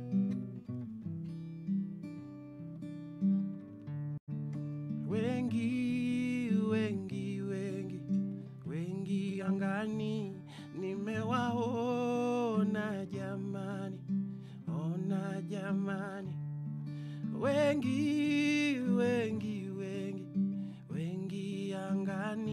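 Acoustic guitar strummed live in a slow, gentle accompaniment, with a man's voice singing long, sliding melodic phrases over it from about five seconds in.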